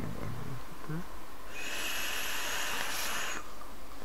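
Air drawn through a vape's atomizer: about two seconds of airy hiss with a thin whistle in it, starting a second and a half in.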